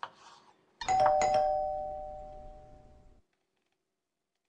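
Two-note doorbell chime, 'ding-dong': a higher note and then a lower one about a second in, ringing out and fading for about two seconds before cutting off suddenly.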